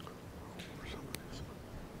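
Faint whispering and soft rustling from people in a quiet room, with a single sharp click about a second in.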